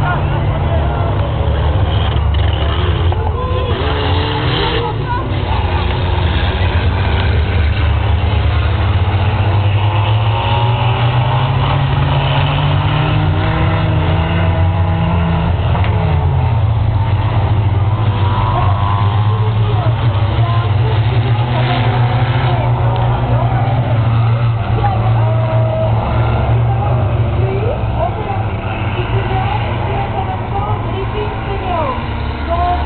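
Race cars' engines running hard around a grass-and-dirt circuit, several at once, their pitch rising and falling as they accelerate and lift. Underneath is a strong low engine drone that climbs slowly, then drops suddenly about halfway through.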